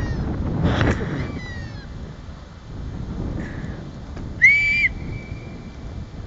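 Wind buffeting the microphone, with a few short falling high-pitched calls in the first second and a half. About four and a half seconds in comes a brief, loud, high whistle-like tone lasting about half a second.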